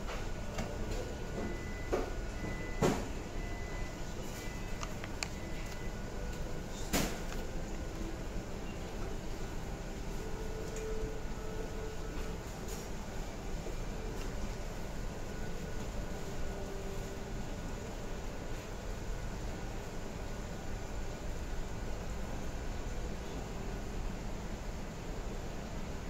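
Steady background noise of a room, with a few sharp knocks and clicks in the first seven seconds, the loudest about three seconds in.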